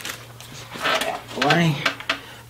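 Thin plastic bag crinkling as a camera is slid out of it, followed about a second and a half in by a short murmured vocal sound from a man.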